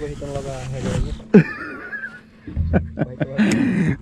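A man's voice exclaiming excitedly in no clear words, broken by two sharp knocks.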